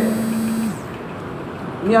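A pause in a man's speech filled by steady background noise, with a low steady hum that stops about three quarters of a second in. His voice comes back with a single word just before the end.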